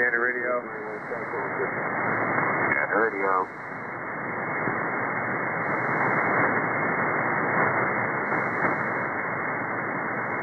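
Shortwave receiver in upper-sideband mode on 5616 kHz, a North Atlantic aeronautical HF channel, playing a steady hiss of static. Two brief snatches of faint, narrow-band voice transmission come through, one at the start and one about three seconds in.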